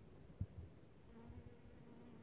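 A honeybee buzzing faintly in flight, a thin steady hum that sets in about a second in. A soft thump comes near the start.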